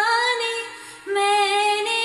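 A woman singing a Hindi film song solo in a soft voice. A held note fades away a little past halfway through, and the next line starts about a second in.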